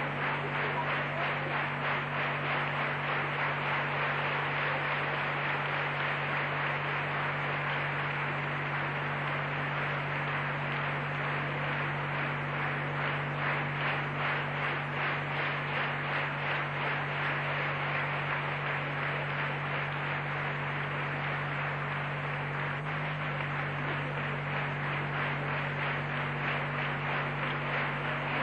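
Steady noise with a low mains hum under it, unchanging throughout.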